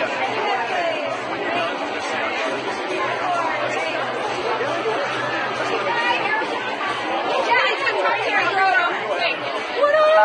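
Many people talking at once, a steady babble of overlapping voices from a crowd of guests.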